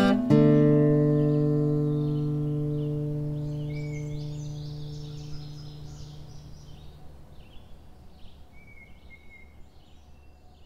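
A last acoustic guitar chord struck just after the start, ringing out and slowly fading away over about seven seconds. Faint bird chirps come in underneath from about three seconds in.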